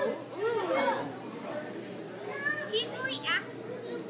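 Children's voices and background chatter, with a few high-pitched children's calls in the second half.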